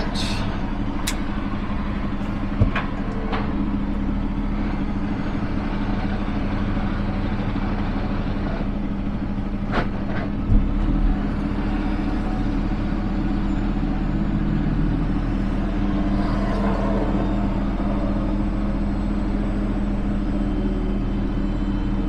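Peterbilt 389 semi truck's diesel engine running steadily at low speed, a constant low drone. A couple of short knocks come through, one about three seconds in and another about ten seconds in.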